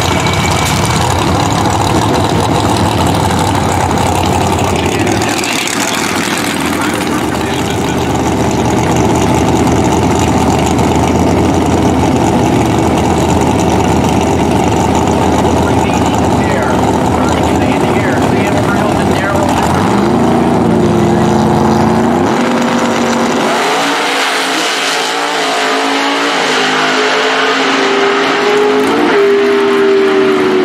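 Pro Outlaw 632 drag cars' 632-cubic-inch naturally aspirated engines: the tail of a burnout, then running at the line while staging. About two-thirds of the way in comes a full-throttle launch, and the engine note climbs in steps through the gear changes as the cars pull away.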